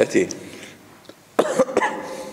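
A man coughing: a short burst of coughs about one and a half seconds in.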